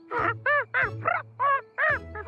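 A cartoon penguin character talking in "penguin": about six short honking calls in quick succession, each rising and falling in pitch, voiced as penguin speech, over faint background music.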